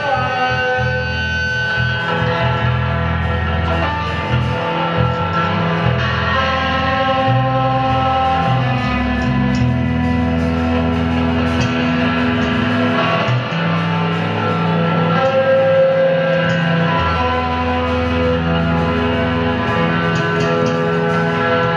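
Live rock trio playing: electric guitar, bass guitar and drums, with long held notes over a steady bass line.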